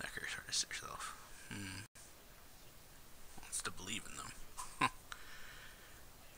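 Anime dialogue in Japanese: characters speaking in two short stretches. The sound cuts out for a split second just before two seconds in.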